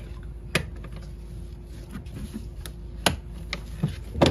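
Retaining clips on a Hyundai Sonata's engine air filter housing being unfastened by gloved hands: a few sharp clicks, the two loudest about half a second and three seconds in.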